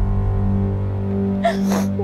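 Background music holding a low sustained drone, with a woman's short sobbing gasp of breath about one and a half seconds in.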